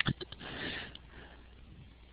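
A sharp click and a few smaller clicks, then a short breath drawn in through the nose lasting about half a second.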